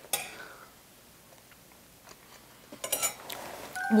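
Metal chopsticks clicking against tableware: one sharp click at the start, then a short flurry of clicks about three seconds in.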